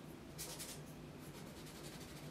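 Faint swishing of a paintbrush stroking back and forth across canvas, blending wet paint; a quick run of strokes comes about half a second in, with fainter ones after.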